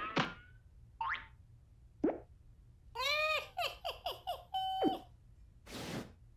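Cartoon bounce sound effects: a string of springy boings and quick pitch glides, with a fast run of repeated bounces about halfway through and a held tone that drops off near five seconds.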